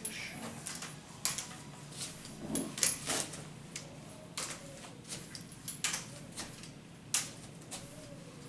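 Aluminium underarm crutches clicking and knocking in irregular strokes, about two a second, as someone handles them and moves about on them.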